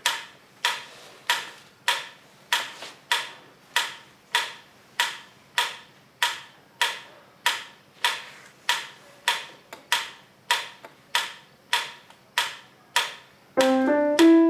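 Steady, even ticking at about three ticks every two seconds. Just before the end, an upright piano starts playing a few notes.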